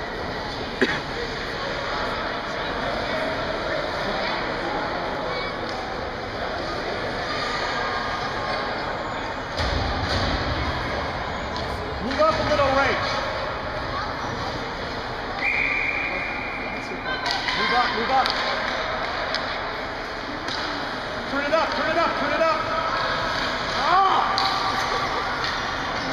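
Ice hockey game sounds in an echoing ice arena: sticks and puck clacking on the ice and boards, with a sharp knock about a second in, and voices calling out from the rink and stands at intervals.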